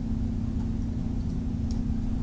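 Steady low electrical hum with a low background rumble, and a faint click near the end.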